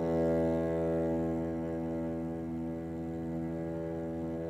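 Solo cello holding one long bowed low note, easing slightly softer as it is sustained.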